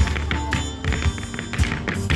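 Irish dancers' hard shoes tapping and clicking on a wooden dance board, over live music played through loudspeakers.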